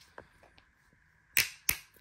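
Two sharp plastic clicks about a second and a half in, a third of a second apart, from a plastic drink bottle handled right up against the microphone, with a few fainter ticks before them.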